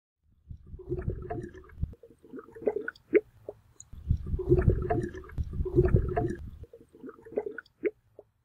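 Irregular gurgling, bubbling sounds in uneven bursts with short gaps, with a few sharp clicks among them.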